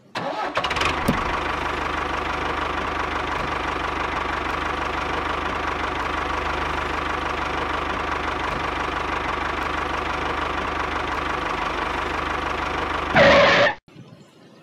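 A small motor running steadily. It starts abruptly, holds an even, unchanging note, rises in a brief louder burst near the end, then cuts off suddenly.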